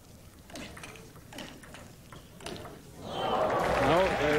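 Table tennis rally: a few faint sharp clicks of the celluloid ball off bats and table, then crowd applause swelling up about three seconds in as the point, and with it the set, is won.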